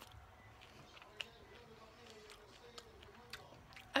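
Quiet chewing of a mouthful of soft, wet food, with a few short mouth clicks, the sharpest about a second in.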